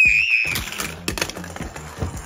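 Tiny toy monster trucks clattering down a plastic and wooden race track, a rapid run of light clicks and rattles that thins out toward the end. A short high-pitched squeal, the loudest sound, opens it.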